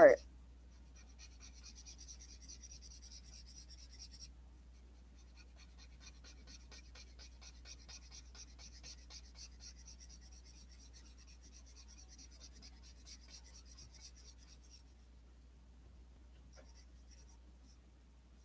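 A marker nib scratching across paper in rapid short strokes as a dark area is coloured in. It runs in two long stretches with a brief break around the four-second mark, stops about fifteen seconds in, and gives a short spurt near the end.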